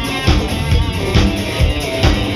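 Live rock band playing an instrumental passage: electric guitar over a drum kit keeping a steady beat of about two hits a second.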